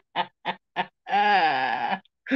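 A woman laughing: a run of short bursts about three a second, then a long, drawn-out laugh that falls in pitch.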